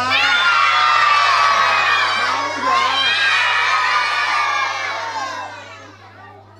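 A group of young children shouting and cheering together, many high voices at once, dying away near the end.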